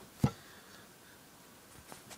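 Handling noise: one sharp click about a quarter of a second in, then quiet room tone with a faint tick near the end.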